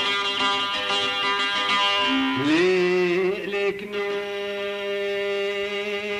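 Old Kurdish folk music from a cassette recording: long sustained melodic notes in a Middle Eastern style, with a sliding rise into a long held note about two and a half seconds in.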